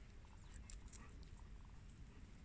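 Near silence, with a few faint short sounds of two Rottweilers sniffing each other.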